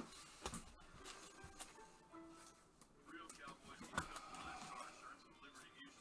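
Faint clicks and rustles of glossy trading cards being slid and flipped past one another in gloved hands, with a sharper tap at the start and another about four seconds in.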